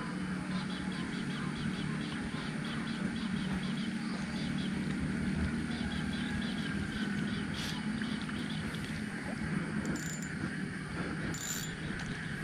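Fishing reel being cranked to retrieve a lure, its gears ticking rhythmically about four times a second.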